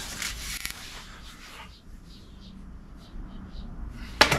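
A pencil scratching a mark onto a film-faced plywood board in the first second or so. After that a low background with a few short, faint high chirps.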